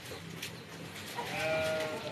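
A cow mooing once, a short held call that starts a little past halfway through.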